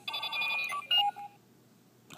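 Electronic sound effect from a Kamen Rider Fourze DX toy, the Fourze Driver belt with the NS Magphone, as the magnet switches are turned on. It is a quick sequence of steady beeping tones that ends in two short beeps about a second in, then stops.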